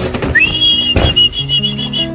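A whistle call to the loft pigeons: a quick rise in pitch, then one long, high, slightly wavering note. It signals the birds to come in and feed. A short knock sounds about a second in.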